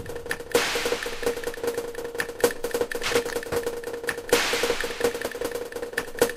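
Breakdown in a club DJ set of electronic dance music: the kick drum drops out, leaving fast clicking percussion over a held tone, with a swell of hissing noise about half a second in and another just past four seconds.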